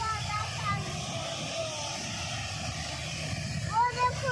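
Steady low rumble of wind on the microphone over the hiss of a shallow stream running over rocks. Faint voices come through, and a voice starts near the end.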